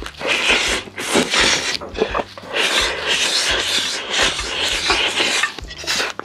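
A person slurping and sucking food and juices straight from a large pan held to the mouth: a run of noisy slurps, a few a second, easing off near the end.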